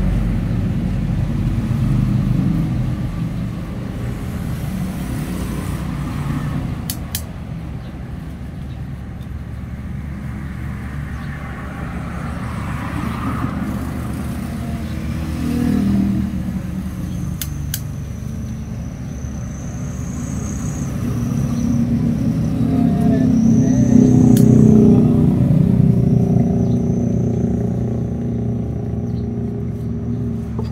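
Road traffic: motor vehicles running past with a steady low rumble that rises and falls, loudest in the last third, with a few sharp clicks.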